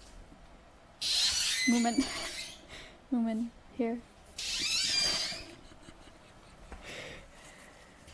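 A woman's stifled, excited laughter under her breath: two long breathy bursts with three short voiced sounds between them.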